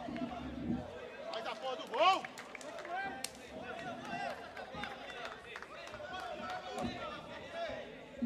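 Players and spectators calling and shouting on and around a seven-a-side football pitch, with one louder shout about two seconds in.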